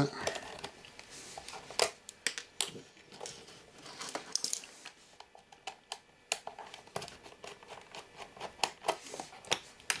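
Screwdriver turning out small screws from a video camera's housing, with irregular light clicks and ticks of the tool on the screws and the casing being handled; the sharpest click comes just under two seconds in.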